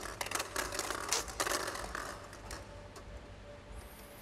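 Plastic draw balls clicking and clattering against each other and the glass bowl as a hand stirs them and picks one out. A rapid run of clicks fills the first two seconds or so, then thins out and grows fainter.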